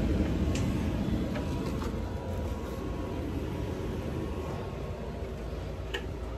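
Home central heating unit running after being switched on: a steady low rumble, a little loud.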